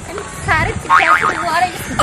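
People's voices talking, high in pitch and sliding up and down, starting about half a second in.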